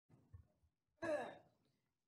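A person's brief sigh or murmur through the meeting microphone, about a second in, falling in pitch, with near silence around it.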